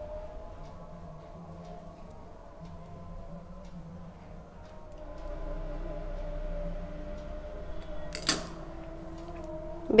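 Faint steady hum of several wavering tones, with one sharp clack about eight seconds in as metal scissors are set down on a stone countertop.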